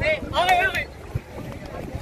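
A person's voice calls out briefly in the first second, then wind rumbles on the microphone.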